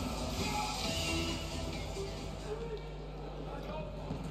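Arena background sound: music playing under the voices of the crowd, with a steady low hum.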